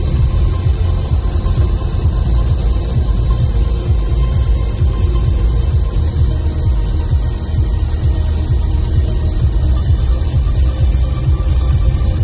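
Music, steady and heavy in the bass.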